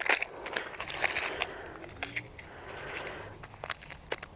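Combat-ration food packets rustling and crinkling as they are handled, with scattered small clicks and crackles.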